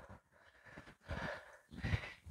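A woman's faint breathing under exertion during a dumbbell squat, two short breaths between counts.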